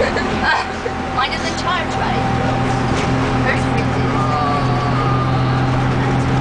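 Bus engine running steadily, heard from inside the passenger cabin while riding. It is a low drone that grows a little stronger about halfway through, with passengers chattering in the background early on.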